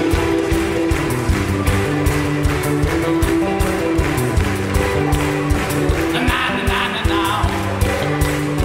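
Live gospel band playing an upbeat instrumental groove with a bass line and a steady drum beat.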